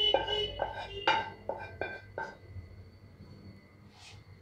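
A metal spoon tapping against a stainless steel bowl, about six ringing taps in quick succession over the first two seconds, then dying away.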